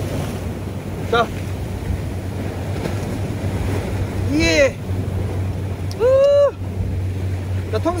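Steady wind and surf on a rocky sea shoreline, with a low continuous rumble underneath. Over it come a short spoken word about a second in and two brief voice-like calls, the louder one at about six seconds.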